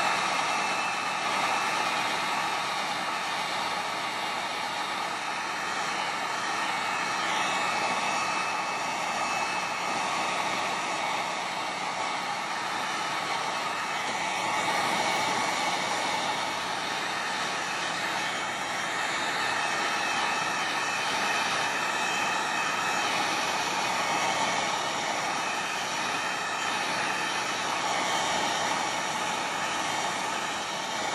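Embossing heat gun running steadily, its fan blowing hot air in a constant rush with a faint whine, melting embossing powder on the outline of a watercolour painting.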